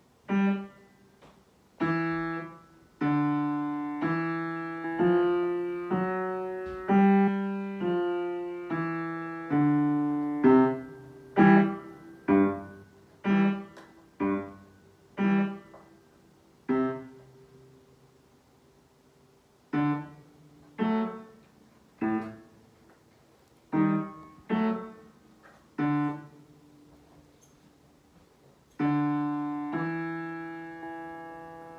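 Upright piano played with the left hand alone: single low notes and short chords struck one after another, some held and fading slowly, with two pauses of a couple of seconds, one just past the middle and one near the end.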